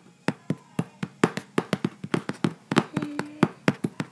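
Rapid, irregular tapping clicks, about five a second, with a brief faint hum about three seconds in.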